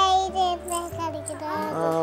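A small girl's high voice in a long, drawn-out sing-song note that glides down, then shorter sing-song phrases, with soft background music underneath.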